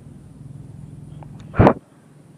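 A steady low hum, then a single short, loud thump about one and a half seconds in, after which the hum stops suddenly.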